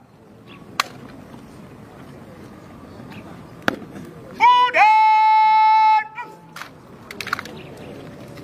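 A drill commander's shouted word of command, its last syllable rising and then held long and steady for about a second. Soon after come a cluster of sharp cracks, fitting the guard's rifle and foot drill in answer. A couple of single sharp knocks come earlier.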